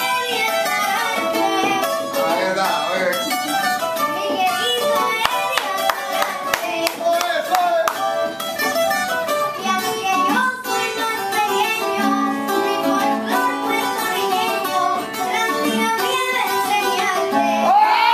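Live acoustic music on plucked strings: a guitar and a smaller, higher-pitched double-strung guitar-like instrument playing together, with a voice singing over them in places.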